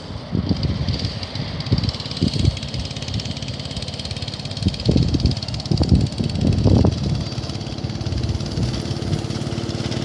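Small go-kart engine running as the kart drives across the grass, with several short louder low bursts, most of them about halfway through.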